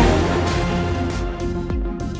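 News segment theme jingle: a sudden hit, then a held musical chord, with a second short hit near the end.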